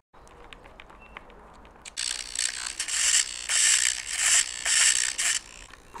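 Small RC servo whirring in short repeated bursts, about two a second, as its geared motor drives the glider's elevator pushrod back and forth. The bursts start about two seconds in, after a couple of faint clicks.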